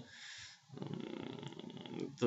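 Faint breathing and a low, rough rasp from a man's mouth and throat during a pause between sentences: a soft breath first, then a creaky buzz until he speaks again.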